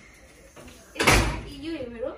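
A mesh security screen door closing once, about a second in, with a sudden loud hit that fades over about half a second.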